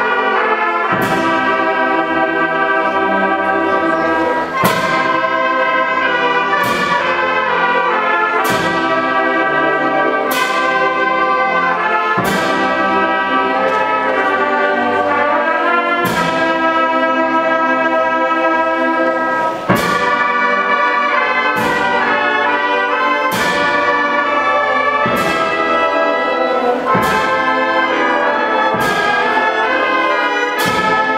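A youth brass band of trumpets, trombones and saxophones plays a piece in full sustained chords, with a percussion strike about every two seconds.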